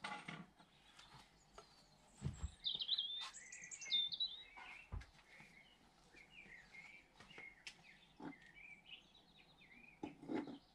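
Birds singing and chirping, a quick warbling song in the first half and softer rising chirps later, with a couple of soft low thumps.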